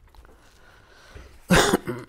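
A man coughs once, sharply, about one and a half seconds in, after a near-quiet stretch.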